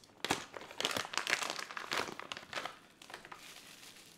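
Clear plastic packaging bag crinkling as it is handled and pulled open by hand: a dense run of crackles for most of the first three seconds, then fainter.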